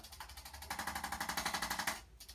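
Corded handheld percussion massager running against a patient's back: a rapid, even hammering that grows louder about two-thirds of a second in and stops abruptly near the end.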